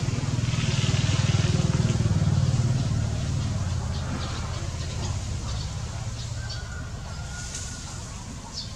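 A motor vehicle's engine rumbling low and steady. It starts abruptly, is loudest over the first three seconds, then slowly fades as if passing away.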